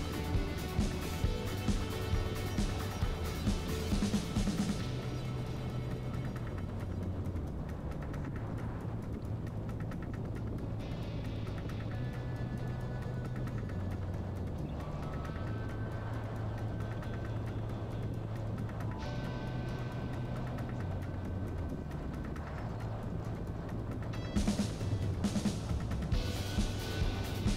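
Background music: a pulsing beat for the first few seconds, then a smoother passage of held low notes and sustained tones, with the beat returning near the end.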